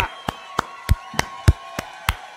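Hands clapping in a steady rhythm, about three claps a second, heard over a video call.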